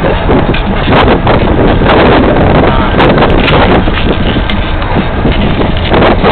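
Wind buffeting the microphone over the road noise of a moving car, heard from the back seat, loud and steady.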